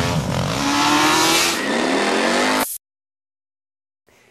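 An engine revving as a logo sound effect, its pitch gliding up and down over a rushing noise; it starts and cuts off abruptly after a little under three seconds.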